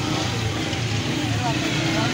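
A motor vehicle engine running steadily with a constant hum, under faint voices.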